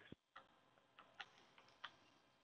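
Near silence on a recorded phone line, with a few faint, brief clicks.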